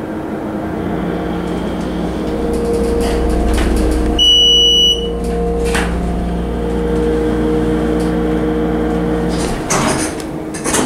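1997 United States hydraulic elevator car travelling up, its submersible pump unit giving a steady hum with several low tones. About four seconds in there is one electronic chime, a single high beep just under a second long, as the car arrives at the floor. The hum cuts off near the end, followed by a few knocks.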